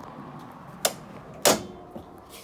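Rear door of a Land Rover Defender 90 being unlatched and opened: a short click a little under a second in, then a louder clunk about half a second later.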